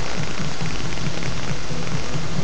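Loud, steady hiss from a cheap webcam microphone with its gain high, with a faint low hum underneath.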